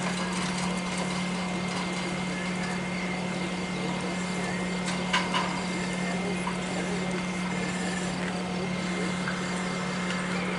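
Fire pump engine running steadily at a constant speed, feeding water into the charged hose line. Two short knocks sound about five seconds in.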